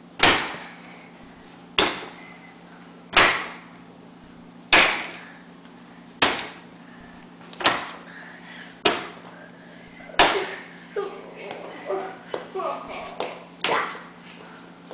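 A toddler banging a book against a wooden pantry door: eight hard strikes about a second and a half apart, each with a short ring, then lighter, quicker knocks in the last few seconds. He is hammering at the door to get past its child-proof doorknob cover.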